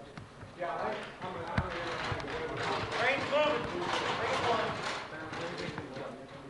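Indistinct voices of people talking, with one short knock about a second and a half in.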